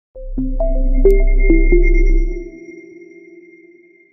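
Short electronic intro sting: a deep bass hum under a quick run of bell-like struck notes, each ringing on, with a thin high tone held above. The bass cuts off about two and a half seconds in, and the notes fade away by the end.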